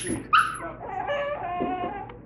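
Small white dog yipping: two short, sharp yips close together at the start, then a drawn-out whimper.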